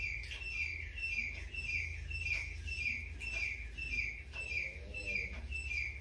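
A bird chirping over and over, about three short, slightly falling chirps a second, the series stopping near the end.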